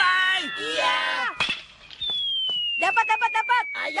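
Cartoon whistle sound effect for a ball flying through the air: one thin tone that starts about halfway in and slides slowly down in pitch. Cartoon voices call out over it.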